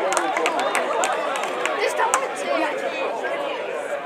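Several people talking and calling over one another, with a few short clicks among the voices.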